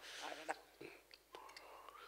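Very quiet, breathy whisper-like voice sounds and faint mouth clicks picked up by a close microphone.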